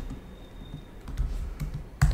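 Computer keyboard typing: a handful of short keystrokes, most of them in the second half.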